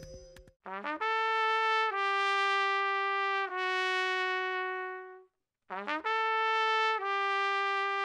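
Solo acoustic trumpet playing a quick upward run into long held notes, stepping down in pitch from note to note and fading on the third. After a short pause about five and a half seconds in, it plays a couple of brief notes and then two more sustained notes.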